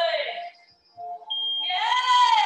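A digital interval timer sounds one long, steady high beep starting about two-thirds of the way in as its countdown hits zero. The beep marks the end of a work interval and the start of a 15-second rest. A woman's voice calls out at the same time.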